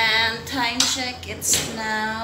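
A singing voice with long held, bending notes, broken by two short sharp noises about a second and a second and a half in.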